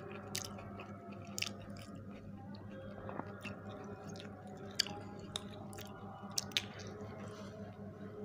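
Two people chewing and biting pizza close to the microphone, with scattered sharp clicks from the mouths. A steady low hum runs underneath.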